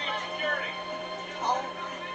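Film soundtrack playing through a television speaker: music with voices over it, and a steady hum underneath.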